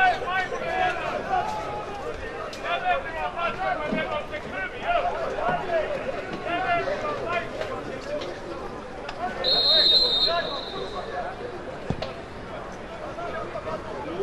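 Men's voices talking and calling out around a football pitch. About two-thirds of the way in, a referee's whistle is blown once for about a second, with play restarting.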